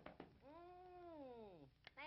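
One drawn-out cry that rises and then slides down in pitch, after two short clicks, with another click near the end.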